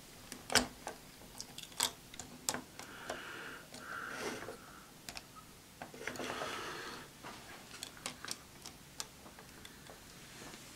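Hard plastic parts of a jointed action figure being handled: a string of sharp separate clicks as the cannon pieces are moved and set, the loudest about half a second in, with a couple of brief rubbing sounds of plastic sliding in the middle.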